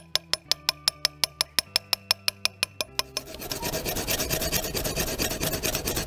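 A hand rasp being drawn back and forth over carved stone: a steady scratchy rasping through the second half. Before it, for about three seconds, a quick even ticking of about six ticks a second over a low steady hum.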